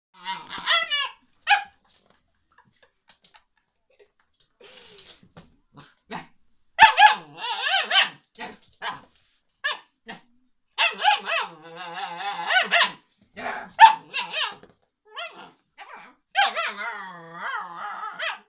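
Alaskan malamute puppy 'talking': pitched vocalizing that slides up and down in pitch, coming in bouts of a second or two with short pauses between them.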